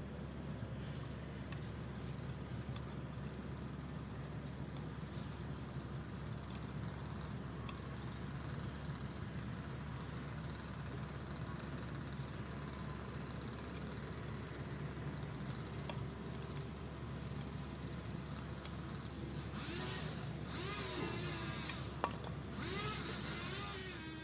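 Steady low rumble of road traffic, which swells for a few seconds near the end.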